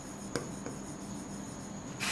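Quiet room with a steady high-pitched whine, and a few faint taps and rubs of a pen on the display board as writing is scribbled out.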